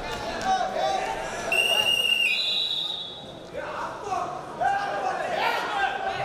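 A shrill, steady high signal tone lasting about a second and a half, jumping up to a higher pitch halfway through: the signal that ends the wrestling bout as the clock runs out. Voices in the arena hall come before and after it.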